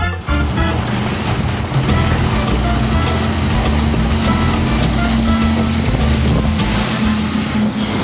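Latin-style background music over the running noise of a center-console sport-fishing boat speeding across the water on triple Yamaha 300 four-stroke outboards, with engine drone and a steady rush of hull spray and wind.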